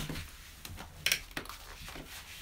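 Faint handling noise of a foam-and-plastic lacrosse arm pad being moved in the hands, with a brief rustle about a second in and a few light ticks.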